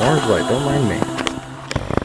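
A person's voice sliding up and down in pitch for about a second, followed by a few sharp clicks and knocks of something being handled.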